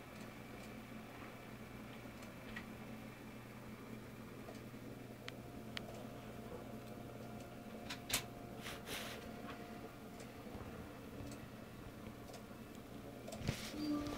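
Faint steady low hum with a few small clicks and rustles from a handheld phone camera, the loudest click about eight seconds in and a longer rustle near the end as the camera is moved.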